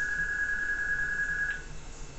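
A steady, high single-pitched electronic beep, held without change and cutting off about a second and a half in, with a faint click as it stops.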